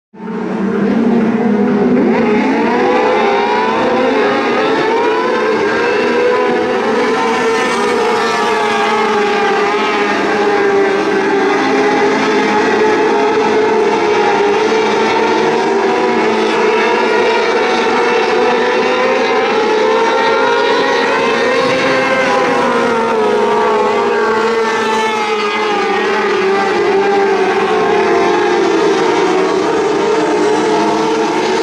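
A pack of Formula 500 speedway cars racing on a dirt oval, engines running at high revs, the pitch rising and falling as they power down the straights and lift for the turns. The sound cuts in suddenly at the start.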